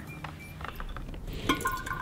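Kombucha starter liquid pouring faintly from a tall glass vessel into a glass jar, with a light glass clink about one and a half seconds in.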